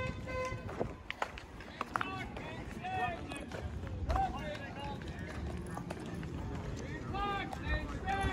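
Outdoor crowd ambience: people talking in the background over a low rumble, with a brief steady tone near the start.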